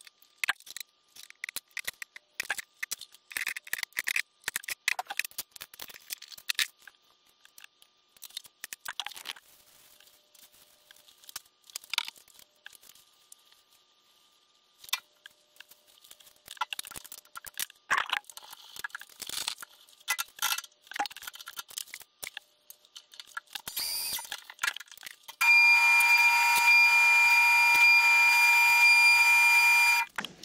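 Clicks and knocks of a tape measure and tools being handled on a metal base plate on a workbench. About 25 seconds in, a milling machine starts with a steady, high-pitched whine made of several tones, the loudest sound here.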